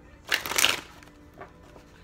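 A deck of tarot cards shuffled by hand: one brisk burst of card noise about half a second long near the start, then quieter handling with a light tap.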